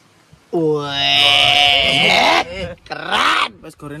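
A man's drawn-out, strained vocal cry starting about half a second in and held at a steady pitch for about two seconds, followed by shorter wavering vocal sounds.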